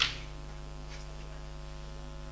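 Steady low electrical mains hum from the meeting-room audio system, heard in a gap between speech, with a brief faint noise at the very start.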